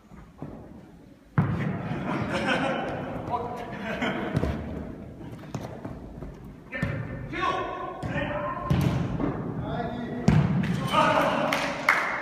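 A futsal ball being kicked on an indoor court, several sharp thuds, the loudest about a second and a half in and again near the end, among players shouting and calling to each other.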